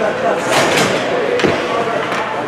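Ice hockey arena sound: voices echo in the rink, with sharp knocks about half a second in and again around a second and a half.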